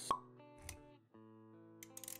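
Intro music with sound effects: a sharp pop just after the start, a brief low thump, then a held chord of steady notes.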